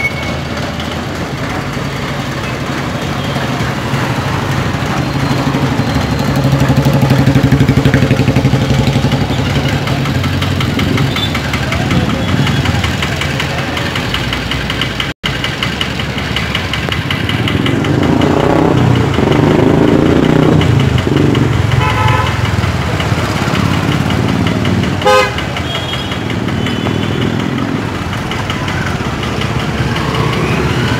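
Road traffic from inside the flow of vehicles: engines running steadily as motorcycles and scooters pass, with a few short horn toots in the second half.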